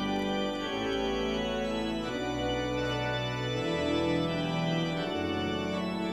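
Organ playing slow, held chords over a bass line that moves to a new note about every second and a half, as memorial music.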